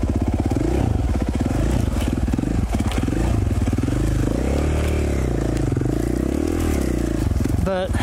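2017 KTM 450 XC-F's single-cylinder four-stroke engine on the move, its revs rising and falling as the bike is ridden over rocks and along trail.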